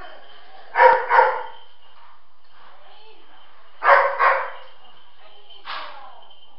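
A rescue dog barking in short pairs: two loud double barks a few seconds apart, then a single softer bark near the end. This is the way a search dog gives its bark indication on finding a hidden person.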